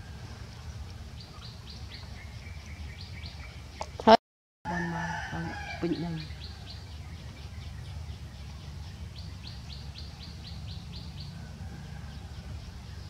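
Bird chirping in quick runs of short high notes, about six a second, heard three times over a steady low rumble. A sharp click comes about four seconds in, followed by a short lower call.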